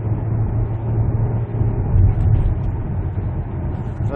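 Ford Explorer's 2.3-litre turbocharged four-cylinder engine pulling uphill under throttle, heard from inside the cabin with road noise: a steady low drone.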